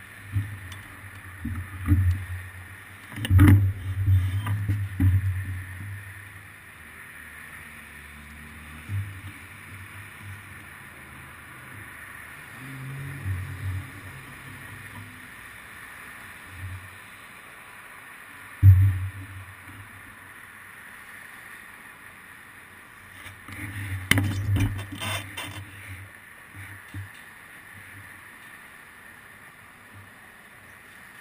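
Muffled low thumps and knocks from a stationary bicycle, carried through a seat-mounted action camera. They come as a cluster a few seconds in, a single sharp knock past the middle, and another cluster about three quarters through, over a faint steady hiss of traffic.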